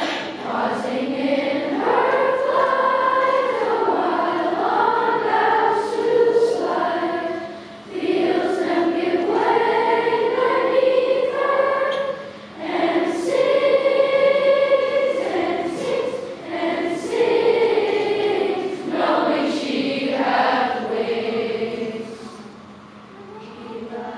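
Sixth-grade children's choir singing a cappella, many young voices together in long phrases with short breaks between them.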